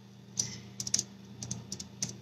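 About half a dozen light, sharp clicks at irregular intervals over a faint steady low hum.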